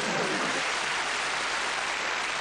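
Studio audience applause: a steady wash of clapping with no individual claps standing out.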